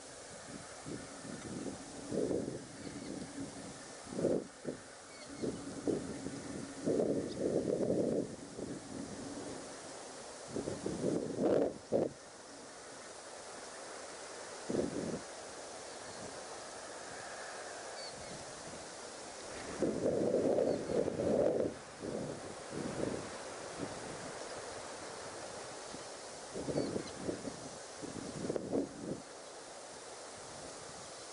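Wind gusting on an outdoor microphone: irregular low rumbling buffets come and go over a steady hiss, with a few faint bird chirps.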